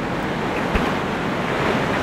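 Steady rush of sea surf, with wind on the microphone.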